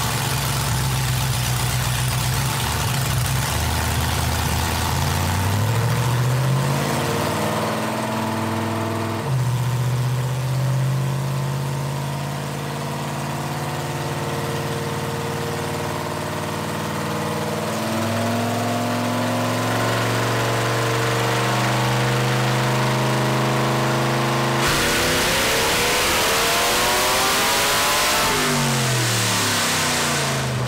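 Cammed 4.8L LS V8 in a Chevy S-10 running on a hub dyno: its pitch climbs and drops back twice as it is worked up, then it pulls hard at full throttle for a few seconds near the end, rising, before easing off and falling. Very loud.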